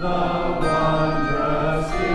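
Handbell choir ringing a carol: chords of bright, long-ringing bell tones, with new bells struck about every half second and each left to sound on.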